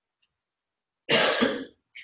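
A person coughs about a second in: one short cough in two quick pulses, after a quiet stretch.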